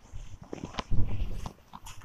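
Silk saree fabric rustling and swishing as it is lifted and spread out by hand, with a low rumbling thud of handling about a second in.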